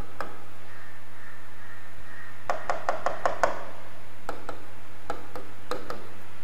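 A marker tapping and scraping on a writing board in short strokes: a few taps at the start, a quick run of about six taps near the middle, then scattered single taps. A steady low electrical hum runs underneath.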